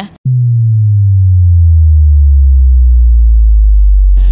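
Loud synthesized bass drop: a deep electronic tone that starts suddenly about a quarter second in and slides slowly downward in pitch, used as an edit transition sound effect.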